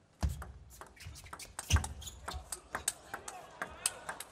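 Table tennis rally: the plastic ball clicks sharply and rapidly off the rubber-faced bats and the table. A couple of heavy low thuds stand out, one about a quarter second in and a louder one near the middle.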